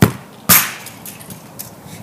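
A soccer ball kicked hard, a sharp thud, and about half a second later a louder bang as the ball strikes something, followed by a few faint knocks.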